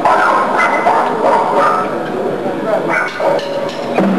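Loud shouting voices in short, broken calls over the noise of a live room.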